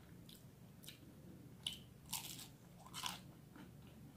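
Crunchy fried chicken samosa being bitten and chewed: about five crisp crunches, the loudest a little before halfway and near the end.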